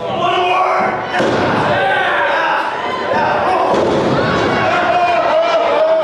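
Wrestlers' strikes and a body hitting the ring mat: thuds and slams, one louder impact about a second in, with voices calling out over them.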